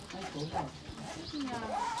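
A pause in a man's speech: faint outdoor background with weak voice traces, and a short rising vocal sound near the end just before he speaks again.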